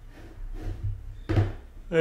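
A brief dull knock about one and a half seconds in, over a low steady hum.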